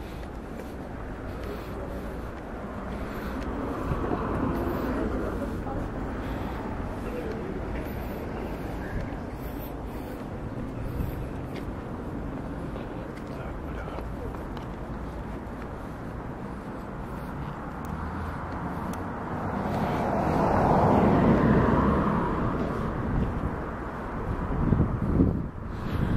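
Outdoor city street noise with passing traffic: a vehicle swells up and fades away twice, the second and louder pass about three-quarters of the way through.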